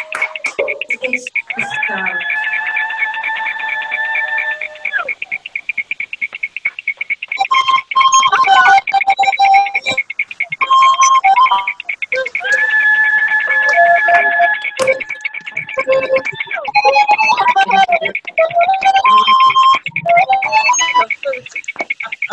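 The 7 o'clock cheer coming through a video call with all participants unmuted: a rapid, evenly pulsing ringing tone, two long held notes, a short stepping tune and scattered claps and voices, all mixed together.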